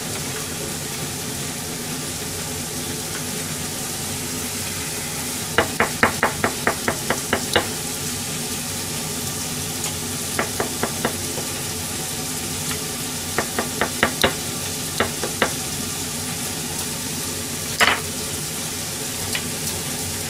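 Meat frying in a pan on low heat, a steady sizzle, with its fat still rendering out. Over it, runs of quick knife strokes on a plastic cutting board, about four or five a second, around six seconds in, again near ten and fourteen seconds, and one louder single sound near the end.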